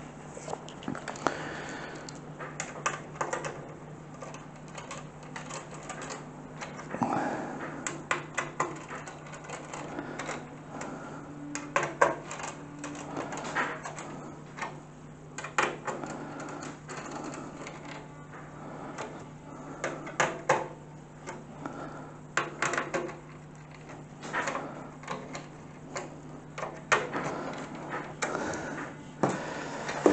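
Screws being tightened to mount a 200 mm case fan on a metal PC case panel: irregular small clicks and light knocks of the screwdriver, screws and panel being handled, over a steady low hum.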